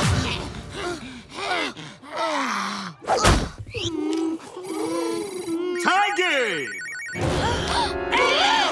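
Cartoon soundtrack of short wordless character cries and a long held, wavering vocal groan, with a sharp hit about three seconds in and a bright electronic ringing sound effect near the end, as the music comes back in.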